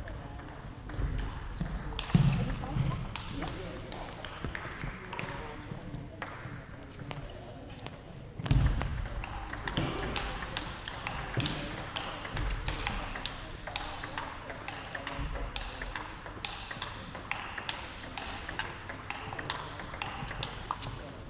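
Table tennis balls clicking off paddles and tables in a large hall, in irregular quick strings, with a couple of heavier thumps and voices murmuring in the background.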